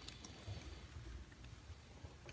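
Very quiet room tone: a faint low hum and hiss with no distinct sound.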